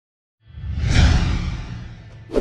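Intro sound effect: a whoosh with a deep low rumble under it, starting about half a second in, swelling to a peak near one second, then fading away.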